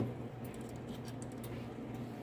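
Furnace combustion blower (draft inducer) motor starting up with a low steady hum, building the draft pressure that the pressure switch senses. A few faint clicks from handling the switch and test leads.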